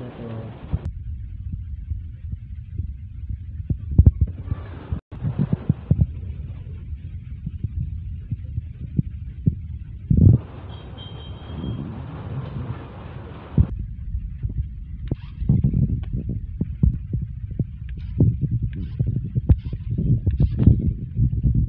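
Low rumble with irregular knocks through several abrupt cuts. From about fifteen seconds in, the knocks come thick and fast as a toy RC rock-crawler truck drives over a tiled floor.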